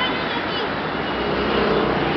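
Steady city road traffic noise, an even hum of passing vehicles.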